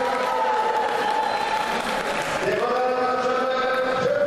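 Choral singing in long held notes, one note sliding up into the next about two and a half seconds in, heard over a hall's background noise.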